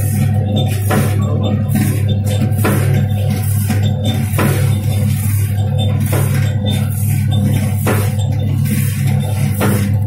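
Automatic namkeen pouch packing machine running: a steady electric-motor and drive hum with a regular clack a little more than once a second, the machine's repeating seal-and-cut stroke.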